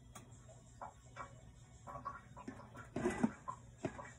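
Faint scattered ticks and small pops from food simmering under a glass pan lid on an electric stove, then a louder rustling burst and a sharp click near the end as a hand takes hold of the lid.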